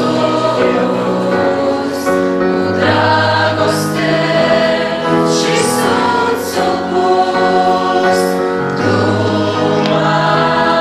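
A mixed youth choir singing a Pentecostal hymn in Romanian, holding long chords with crisp 's' sounds in the words.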